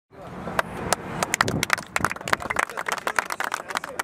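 A small group of people applauding, many irregular hand claps, with voices talking underneath.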